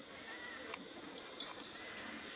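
Faint outdoor background with a few light clicks about midway and a brief high chirp near the start.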